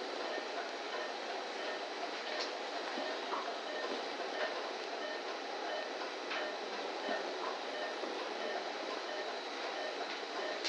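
Steady operating-room background hiss, broken by a couple of faint clicks from surgical instruments, one a few seconds in and one past the middle.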